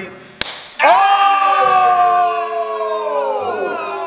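A single sharp slap on a freshly shaved bald head, about half a second in. It is followed by a long, loud, drawn-out cry of "Oh!" from the man who was hit.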